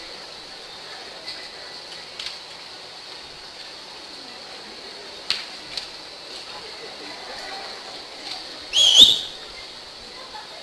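A single short, loud whistle near the end, sliding up in pitch and wavering, over a steady background hiss of a large room, with two sharp clicks a little past halfway.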